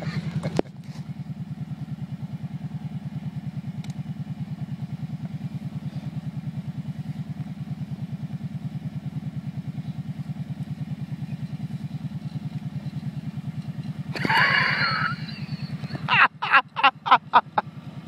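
Quad bike (ATV) engine idling steadily with an even, rapid beat, after a brief laugh at the very start. A few seconds before the end a louder burst breaks in, followed by a string of sharp, irregular sounds.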